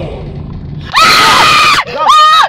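A woman screaming in fright: one loud, high scream starting about a second in and lasting under a second.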